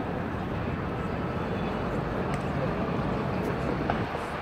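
Crowd chatter: many people talking at once in a steady babble.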